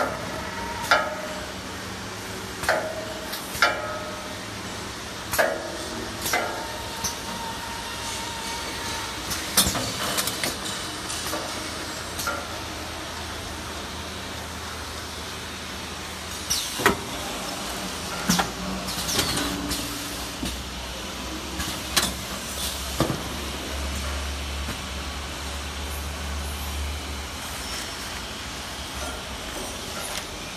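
Toilet-roll packing machine running: a steady mechanical hum with irregular sharp clacks and knocks from its moving parts, a few of them ringing briefly. A low rumble swells in the latter part.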